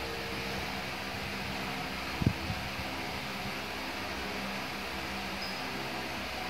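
A steady mechanical hum with a faint hiss, with one brief knock about two seconds in.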